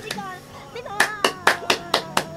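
Hands clapping in a quick run of about four to five claps a second, starting about a second in.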